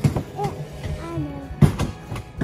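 Mountain coaster sled rolling along its metal rail with a low rumble and two sharp clacks, one at the start and a louder one about a second and a half in, with a brief voice-like sound between them.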